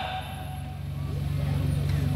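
A low, steady hum that grows louder through the second half, with no words over it.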